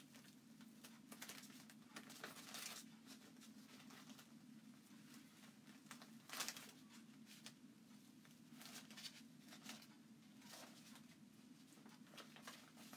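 Near silence with faint crinkles and crackles from a damp, sticky Chalk Couture transfer sheet being gently peeled apart by hand, the clearest about a third and halfway through, over a steady low hum of room tone.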